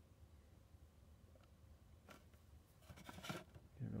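Near silence with a few faint scrapes and knocks as a small plastic-and-metal power inverter is handled and slid on a wooden workbench, about two seconds in and again near three seconds.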